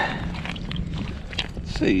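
Clam shells clicking against each other inside a mesh bag as it is opened and handled, a few sharp clicks over a low rumble of wind and water.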